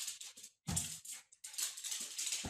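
A small fluffy dog playing with a balloon on a tiled floor: a quick, irregular run of short, hissy, scuffling noises, with a dull thump a little after half a second in.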